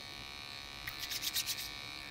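Steady buzz of an electric hair clipper running in the background. About a second in comes a quick run of about seven soft, scratchy rubs: fingertips working styling product through textured hair close to the microphone.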